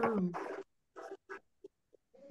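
A person's voice over a video call: a drawn-out sound falling in pitch, then a few short, hesitant syllables about a second in and near the end.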